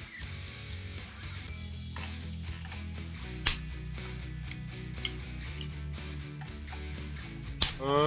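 Background music built on low, held notes that change pitch every second or so, with a few sharp clicks laid over it.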